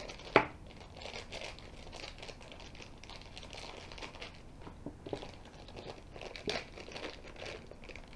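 Thin clear plastic packaging bag crinkling and tearing as it is opened by hand, with a sharp click about half a second in.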